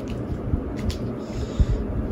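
Trading cards being handled and moved aside on a tabletop: a few soft taps, with a brief sliding rustle a little past halfway.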